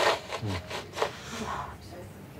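A woman crying: ragged, gasping sobs, with a short falling wail about half a second in and further catches of breath after it.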